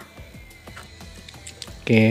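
Faint scratching and ticking of a cutter blade scraping through a copper trace on a TV circuit board, under quiet background music. A man's voice starts near the end.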